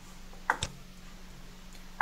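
Two quick clicks of a computer mouse button, close together, as the on-screen menu is clicked, over a faint steady hum.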